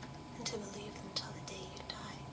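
A woman speaking softly, close to a whisper, in short breathy phrases, over a faint steady electrical whine.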